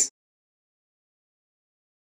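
Silence: a spoken word cuts off right at the start and the sound track then goes completely dead.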